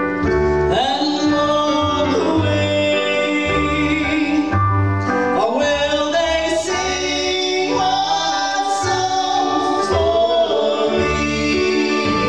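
A live country-gospel band plays: a plucked upright bass and a keyboard, with singing in long held and gliding notes above them.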